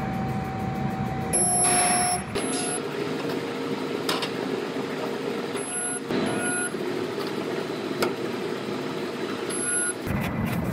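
A steady machine hum with steady whining tones, and a few sharp knocks of sheet metal as a truck bedside panel hanging from a hoist is handled into place.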